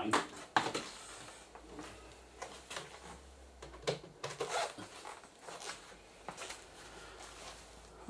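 Handling noise: a sharp click about half a second in, then scattered light knocks and rustles over a low steady hum.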